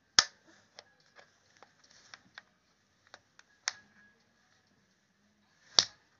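A series of sharp, brief clicks: a loud one just after the start, another about halfway through and a third near the end, with fainter ticks in between.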